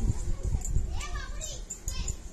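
A brief high-pitched voice with a gliding pitch about a second in, no clear words, after some low thudding noise at the start.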